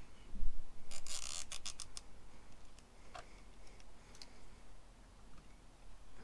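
A thump about half a second in, then a rapid run of ratcheting clicks lasting about half a second and a few scattered clicks after: a nylon cable tie being pulled tight.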